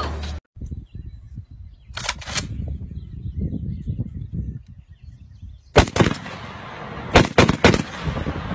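Shotgun shots in quick groups: two cracks about two seconds in, three more near six seconds and another rapid run of three or four just after seven seconds, with an uneven low rumble between the shots.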